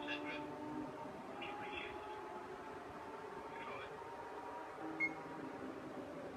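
Faint, indistinct murmur of voices over a steady low background hum, with one short sharp click about five seconds in.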